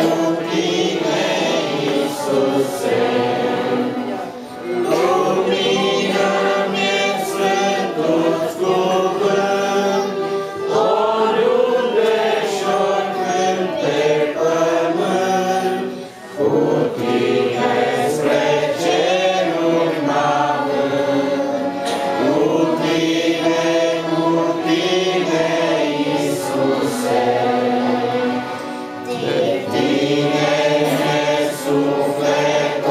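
Three young girls singing a Christian song in Romanian together into microphones, a continuous sung melody with short breath pauses between phrases.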